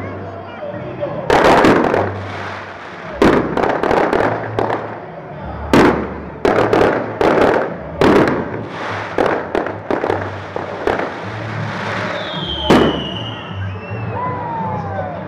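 Aerial fireworks bursting overhead: a quick, irregular run of sharp bangs, often two or three close together, each trailed by crackling. A short falling whistle comes about twelve seconds in.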